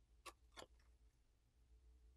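Near silence, with two faint, short clicks about a quarter and half a second in, from a thin plastic phone back cover being bent by hand.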